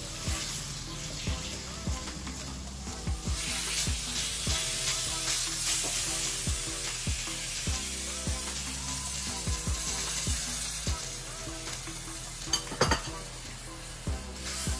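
Chicken pieces sizzling and frying in curry paste in a hot wok while a spatula stirs and scrapes them. Near the end the spatula knocks sharply against the wok a few times.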